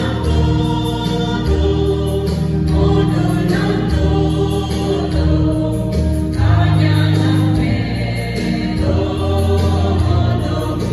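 Mixed choir of men and women singing a hymn together in harmony.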